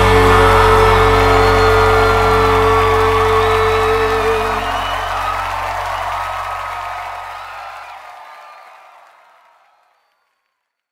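A worship band's final chord rings out and fades away. The held notes stop about halfway through, the bass dies about eight seconds in, and the sound fades to silence just before the end.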